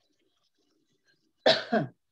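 A woman coughing twice in quick succession, about one and a half seconds in.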